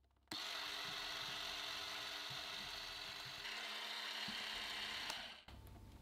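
Electric hand mixer running steadily, its wire beaters whipping heavy cream and sugar in a glass bowl toward soft peaks. The motor starts just after the beginning and cuts off near the end.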